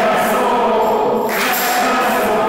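Several voices singing a hymn together, holding long notes.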